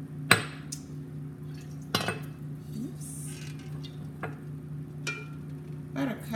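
Kitchenware being handled: a glass jar and a cookpot knocking against the counter, with a sharp clack about a third of a second in and another about two seconds in, then lighter clinks, over a steady low hum.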